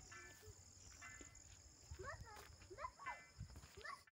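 Faint outdoor ambience: a steady high chirring of crickets, with faint distant voices in the second half.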